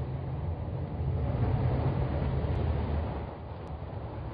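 Jeep Cherokee SUV driving, a steady low engine and road rumble that swells about a second in and eases off near the end.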